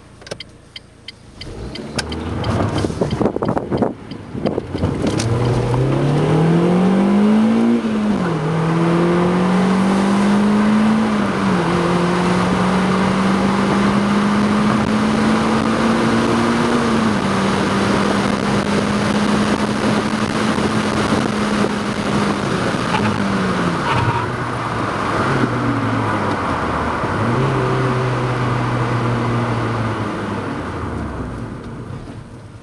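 Car engine heard from inside the cabin, accelerating hard through the gears on a timed acceleration run: the engine note climbs and drops back at upshifts about 8, 11 and 17 seconds in, holds steady for a few seconds, then falls and settles at a lower, steady note near the end. Road and tyre noise run under it, and a few sharp clicks come in the first few seconds before the run starts.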